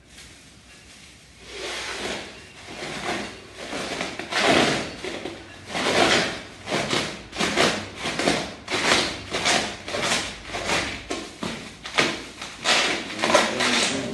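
A person blowing repeated breaths into a makeshift balloon to inflate it. The puffs are sparse at first, then come one or two a second.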